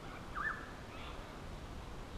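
One short, faint bird chirp about half a second in, dipping then rising in pitch, over quiet bushland background.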